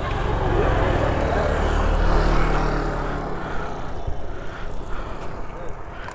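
A motor vehicle passing close by on the road, its engine sound swelling to a peak about two seconds in and then fading away.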